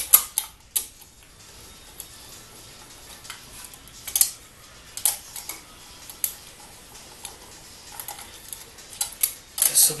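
Scattered sharp metallic clinks and ticks of a hand wrench and socket working the head bolts while the cylinder head bolts of a 420A four-cylinder engine are snugged, with a denser cluster near the end.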